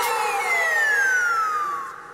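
A comic film sound effect: one long whistle-like tone sliding steadily down in pitch, fading out near the end.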